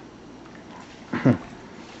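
A young baby's short whimper that falls in pitch, about a second in.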